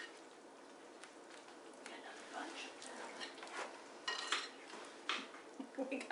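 Spoons scraping and clinking against a bowl and a baking tray as prune filling is spooned onto dough, in scattered small clicks and scrapes, with a few louder clinks about four and five seconds in.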